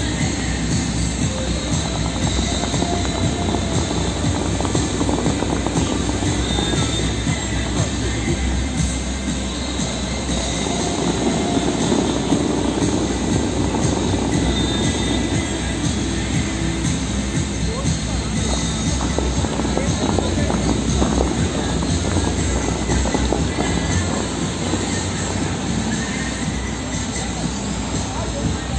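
Bellagio fountain water jets rushing and spraying in a steady heavy rush that swells for a few seconds in the middle, with the show's music playing and people's voices mixed in.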